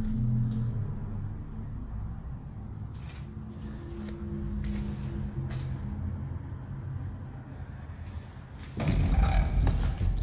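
Dark, low drone of ambient background music with a few held low notes. Near the end a loud, deep rumbling hit comes in.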